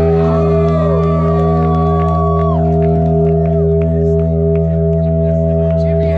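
Guitar played through effects pedals, holding a steady, sustained droning chord with gliding tones sweeping over it.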